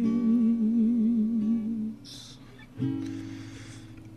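A man's voice holds a long wordless note with wide vibrato, ending about halfway through. After a short breath, a guitar note is plucked and rings out, slowly fading.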